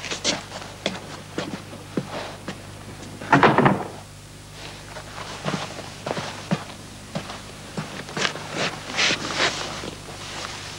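Footsteps and small knocks in a room, with a door being shut, the loudest sound, about three and a half seconds in.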